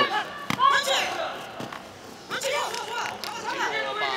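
Commentary voice over hall ambience, with two short thuds from the taekwondo bout, about half a second and a second and a half in.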